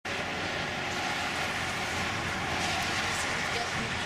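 Steady highway traffic noise: the constant tyre and engine sound of cars passing on a multi-lane interstate.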